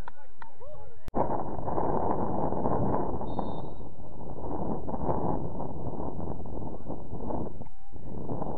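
Players' voices calling on a football pitch, then, after an abrupt cut about a second in, a steady rush of wind on the camera microphone with faint shouts under it.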